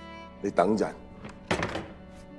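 Film soundtrack: two short bits of a voice speaking, over soft steady background music, with a sudden knock about a second and a half in.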